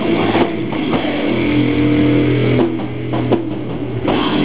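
Live doom metal band: a heavily distorted guitar and bass chord is held and left to ring for a couple of seconds with the drums mostly dropped out. A few sharp hits come near the end, just before the full band kicks back in.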